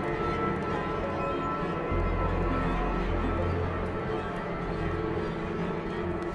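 Dark, ominous background score: a low sustained drone under held notes. The bass deepens about two seconds in.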